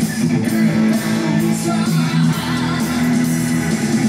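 Live hard-rock band playing, with electric guitar and bass over drums and cymbals, in a thin-bottomed recording that lacks deep bass.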